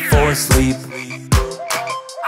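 Children's song instrumental backing with a drum beat, and near the end a cartoon frog croaking sound effect of a few short rising-and-falling calls.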